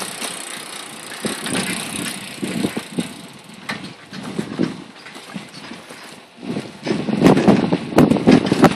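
Rumbling, uneven noise of a bicycle under way, wind buffeting the microphone and the ride rattling along, growing louder near the end.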